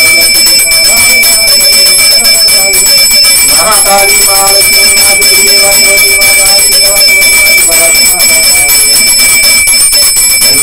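A puja handbell (ghanti) rung continuously and rapidly, its high ringing tones steady throughout, over a voice chanting in long, held notes.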